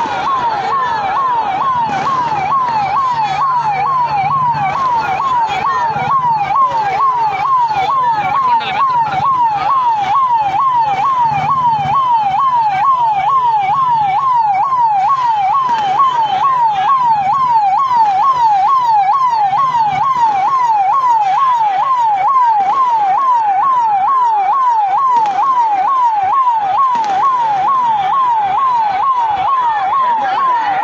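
Police vehicle siren sounding a fast, steady warble, about two rise-and-fall cycles a second, over the noise of a crowd.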